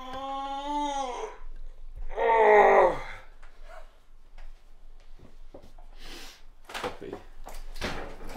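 A man's voice making two long wordless sounds, each one sliding down in pitch at the end; the second, about two seconds in, is louder and drops lower. After it come scattered light clicks and knocks.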